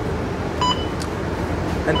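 A single short electronic beep about half a second in, over the steady low hum of a Mercedes-Benz O530 Citaro city bus standing at a stop.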